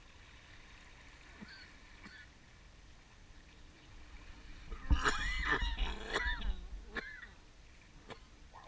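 Birds calling: a few faint calls early on, then a loud burst of several arched, harsh calls about five seconds in, lasting around two seconds.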